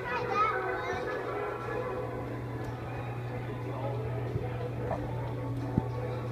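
Shopping-mall background: a steady low hum under background music, with voices and a child's voice, the loudest in the first second. A single sharp click sounds near the end.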